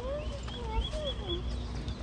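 Pet dog whining in a few short cries that rise and fall in pitch.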